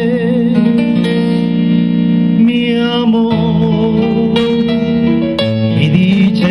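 A man singing an Ecuadorian pasillo, holding long notes, with plucked guitar accompaniment.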